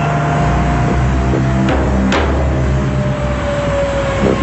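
Several motorcycle engines running with background music.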